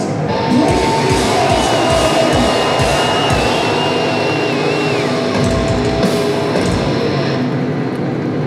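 Live metalcore band playing a heavy, distorted guitar riff with bass-drum hits through the PA. A high held guitar tone sounds over it and slides down and away about five seconds in.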